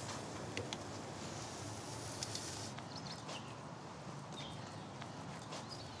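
Metal tongs clicking lightly a few times against the grill grates and skewers as swordfish skewers are lifted off a gas grill, over a steady low hiss.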